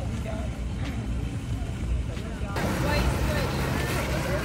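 Low outdoor rumble with faint voices in the distance. A little over halfway through it cuts abruptly to the steady splashing of a fountain jet falling into its pool, with voices still faintly behind it.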